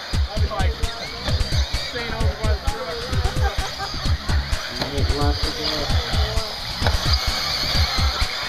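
Voices talking over a steady, high-pitched hum of 1/8-scale RC buggies racing on the track, with low thumps on the microphone throughout.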